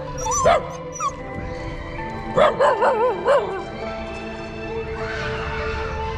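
A small dog whimpering and yipping: short rising-and-falling calls in the first second, then a longer wavering whine about two and a half seconds in, over background music with held tones.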